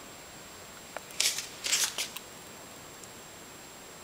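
A quick cluster of short, sharp rustling scrapes about a second in, lasting about a second, over a faint steady high-pitched whine.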